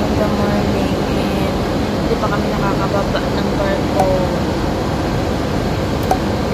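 Steady, loud mechanical drone of running machinery, with a faint hum in the first couple of seconds and faint voices in the background.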